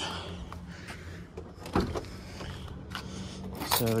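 Car bonnet release being worked: one sharp clack about halfway through as the latch pops, with lighter knocks and handling around it over a steady low hum.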